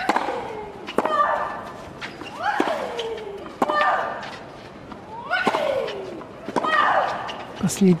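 Tennis rally on a clay court: sharp racket-on-ball strikes about every second to second and a half, each followed by the hitting player's loud grunt or shriek falling in pitch.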